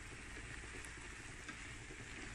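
Shredded cabbage, carrot and greens frying in a metal pan with a quiet, steady sizzle, and a light tap of the wooden spatula about one and a half seconds in.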